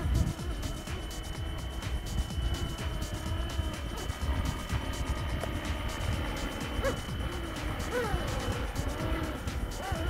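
Small electric RC helicopter hovering: a steady high motor whine over the rotor, with heavy wind rumble on the microphone.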